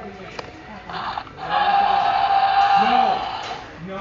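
Electronic roar from a Mattel Jurassic World Allosaurus toy's sound chip, played through its small speaker. A click comes about half a second in, then one long roar starts about a second and a half in and lasts about two seconds.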